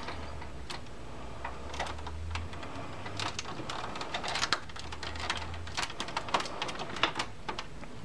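Plastic front panel of a Gateway DX4860 desktop tower being worked back onto the case by hand: an irregular scatter of small plastic clicks, taps and rattles as its tabs are pushed under and clipped in. A low hum comes in twice.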